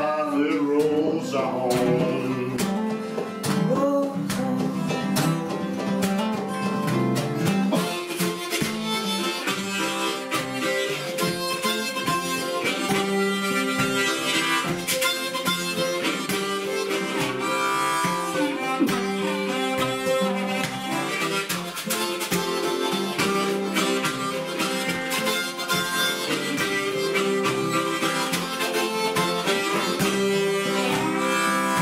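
Harmonica played in a neck rack over two strummed acoustic guitars: an instrumental break in a song, with a steady strumming rhythm throughout.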